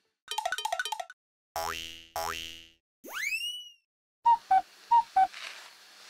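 A comic cartoon sound-effect sting: a quick warbling trill, two rising boing swoops, a rising slide whistle, then four short loud notes going high-low, high-low.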